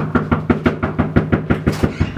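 Rapid, continuous knocking on a front door, about seven knocks a second.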